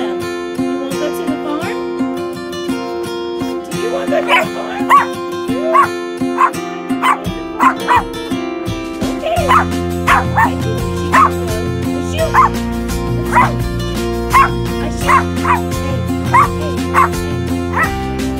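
A small Pomeranian yapping in short, high barks about once a second from about four seconds in, eager to be taken along. Background music plays under it, with a bass line coming in about halfway.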